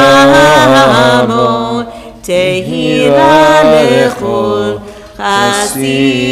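A solo male voice chanting Hebrew liturgy in long, sustained phrases with slow pitch glides, breaking off briefly about two seconds in and again about five seconds in.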